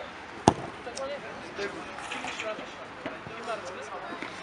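A football kicked hard once, a single sharp thud about half a second in, with players' voices calling in the background.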